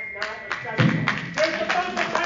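Unclear voices talking over one another, with a heavy thump a little under a second in.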